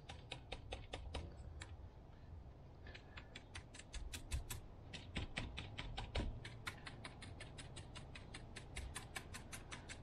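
Stiff paintbrush dabbing white paint, a quick run of light taps about six a second, with a short pause about two seconds in. The brush is worked on a cardboard palette to unload the excess paint, then stippled through a paper stencil onto the wood near the end.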